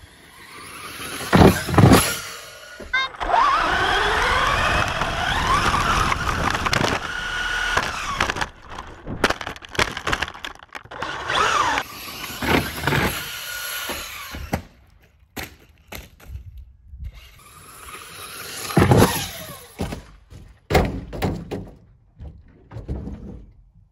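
Traxxas 4x4 VXL RC trucks with brushless motors: a couple of hard crashing impacts about a second in, then the motor whining up and down in pitch for several seconds, choppy bursts of motor and clatter, and more hard impacts near the end.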